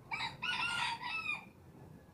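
Rooster crowing once: one call of about a second and a half, with a brief break near its start.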